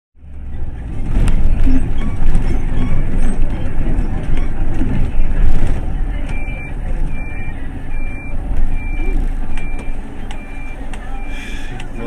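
Loud, low rumble of a 30-seat bus's engine and road noise heard from inside the cab. From about halfway in, a high electronic beep starts repeating evenly, a little under twice a second.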